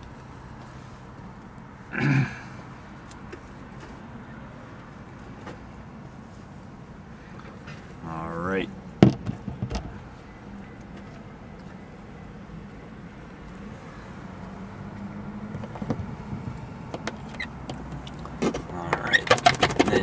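Road traffic passing outside, heard from inside the vehicle through the windshield, with a louder burst about two seconds in and a short rising whine followed by a sharp click around eight seconds. Near the end comes a run of quick scraping clicks as a razor blade scrapes excess cured pit filler off the windshield glass.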